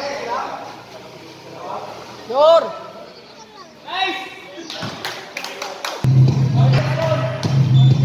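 Two short shouted voice calls from the court, about two and a half and four seconds in. From about six seconds in, background music with a heavy bass comes in and is the loudest sound.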